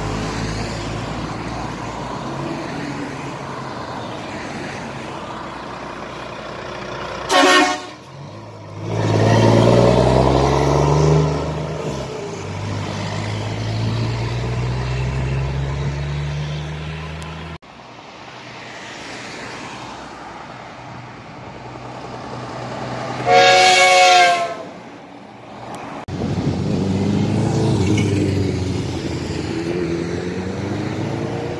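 Heavy trucks passing, with two loud truck horn blasts: a short one about a quarter of the way in and a longer one of about a second later on. Between them a truck's engine pulls away, rising in pitch through a gear change.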